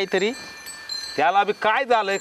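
Steady, high ringing chime tones throughout. A voice talks briefly at the start and again from a little past halfway, louder than the chime.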